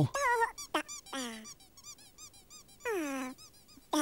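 Squeaky gibberish voice of a clay cartoon character: a few short, high squeaks that fall steeply in pitch. Faint, quick chirps come between them, then one longer falling squeak about three seconds in.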